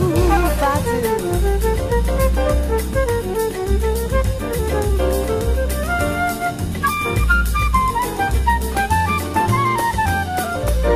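Big band jazz playing an instrumental passage of a bossa nova: a wandering horn melody over a steady bass pulse and drums, with no singing.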